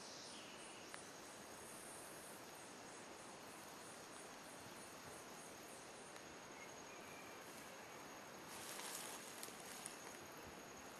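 Faint insects chirping in a high, evenly repeated pulse over a quiet hiss; the chirping fades out about six seconds in. A short burst of hiss comes near the end.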